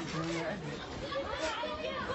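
People talking, with voices overlapping in chatter.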